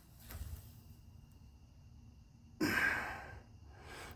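Quiet for the first two and a half seconds, then a single heavy sigh from a man, one breathy exhale lasting under a second.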